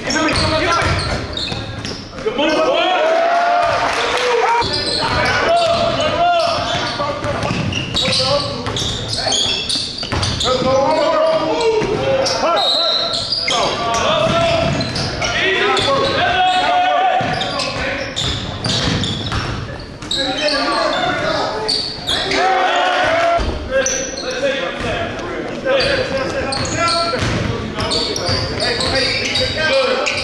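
Basketball being dribbled on a hardwood gym floor during a game, with voices of players and spectators throughout, echoing in the large hall.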